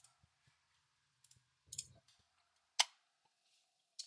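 A few separate sharp clicks from a computer keyboard or mouse as a command is entered, with the loudest about three seconds in.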